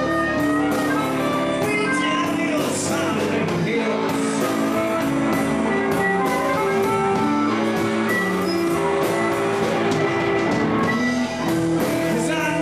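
Live blues band playing: a harmonica played through a microphone over electric guitar, bass guitar and drums, holding long notes.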